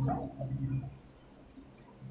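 A student's voice, faint and off-microphone, reciting Arabic verse; it stops about a second in.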